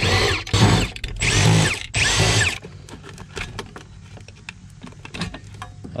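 Milwaukee M18 cordless impact driver run in four short bursts over about the first two and a half seconds, backing out the bolts that hold an old car security-system module to the floor. Only faint handling clicks follow.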